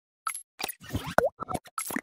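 Logo-animation sound effects: a quick run of about eight short cartoon pops, one of them with a springy bend in pitch just past the middle.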